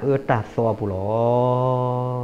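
A man preaching: a few quick spoken words, then one long drawn-out syllable held at a steady low pitch for over a second.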